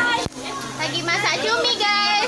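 Several teenagers' voices chattering and calling out over one another, no clear words, with one short knock about a quarter of a second in.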